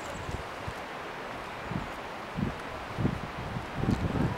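Steady wind noise on the microphone, with a few short, dull low thumps in the second half.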